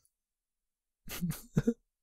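About a second of silence, then a person coughs, a few short bursts near the end.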